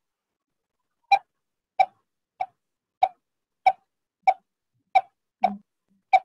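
A man imitating the call of the coppersmith barbet by blowing through cupped hands: a short, even 'tuk' note repeated about one and a half times a second, eight times, starting about a second in.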